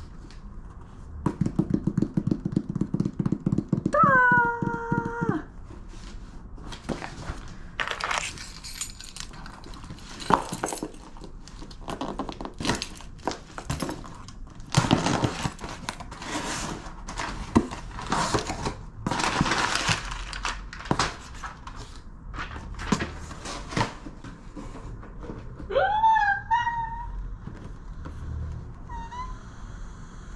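Cardboard shipping box being torn open by hand: a fast ripping run early on, then a long stretch of crackling, tearing and scraping bursts as the flaps and packing come apart. Two short high-pitched whines stand out, one about four seconds in and one near the end.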